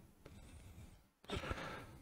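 Near silence, then a person's soft sigh or breath out a little over a second in.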